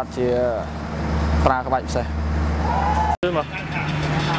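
A man talking over the steady low hum of a parked truck's engine running. The sound drops out for an instant just after three seconds, and a different steady hum follows.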